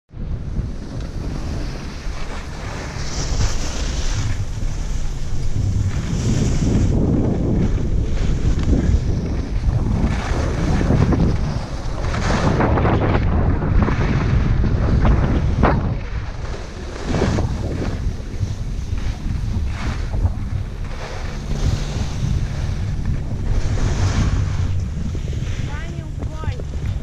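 Wind buffeting an action camera's microphone during a downhill ski run, a constant low rumble, with skis hissing and scraping over packed, groomed snow in repeated swells as the skier turns.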